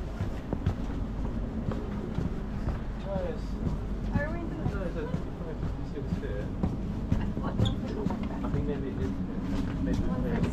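Inside a sleeper-train corridor: a steady low rumble from the rail car, with the faint voices of other passengers from about three seconds in, and scattered light clicks and knocks from walking a suitcase along the corridor.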